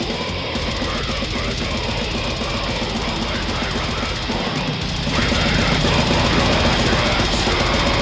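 Heavy metal song with electric guitar and drum kit; the music gets louder about five seconds in.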